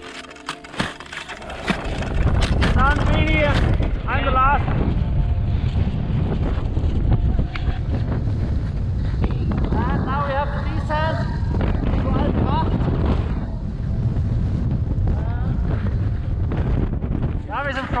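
Wind buffeting the camera microphone: a loud, even low rumble that sets in about two seconds in and holds. Short bursts of voices sound over it three times. In the first couple of seconds there are sharp clicks and knocks.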